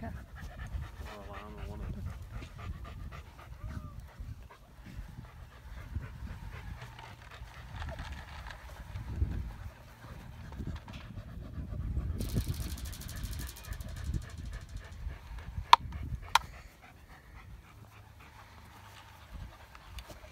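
Alaskan malamute panting over a low rumble, with two sharp clicks about a second apart near the end.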